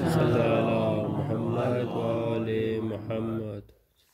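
A man's voice chanting a religious recitation in long, sustained, melodic phrases as he reads from a small book. It stops abruptly about three and a half seconds in.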